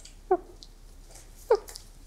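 A woman sobbing: two short whimpers about a second apart, each falling in pitch.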